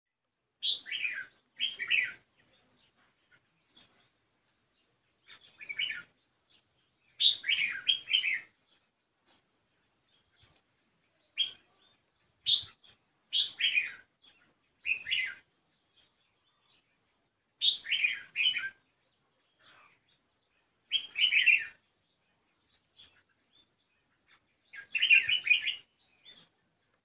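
Red-whiskered bulbul singing: short, bright, warbling phrases given about every one to four seconds, with quiet gaps between them.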